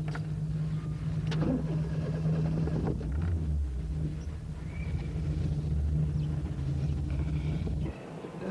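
Car engine running steadily: a low, even hum with a rumble beneath it.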